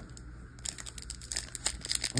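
Foil Pokémon booster pack wrapper crinkling in the hands, a quick run of small crackles starting about halfway in.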